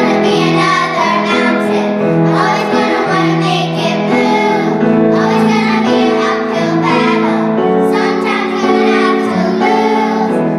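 A group of eight young girls singing a pop song together into microphones, with held notes.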